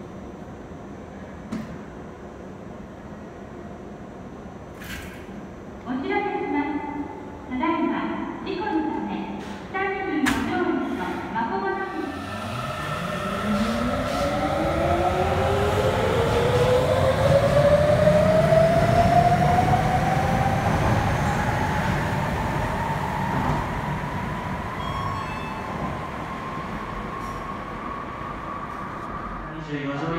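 A Sapporo Subway Namboku Line train pulls out of the station: its inverter-driven traction motors whine in a long, steadily rising pitch while the running noise swells and then slowly fades as it leaves. Before it starts moving, a short series of pitched tones sounds.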